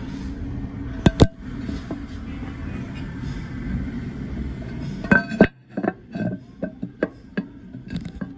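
Hard clicks and knocks on a porcelain toilet tank lid as it and the phone resting on it are handled: two sharp clicks about a second in, a cluster of louder knocks a little after five seconds, then lighter ticks two or three a second. Background music plays throughout.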